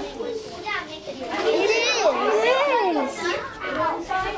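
Several young children talking over one another, with a high child's voice sliding up and down in pitch around the middle.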